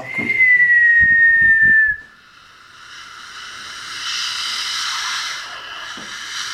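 A person whistles one held note for about two seconds, sliding slightly down in pitch. It is followed by a long breathy hiss that swells and then fades over the next few seconds.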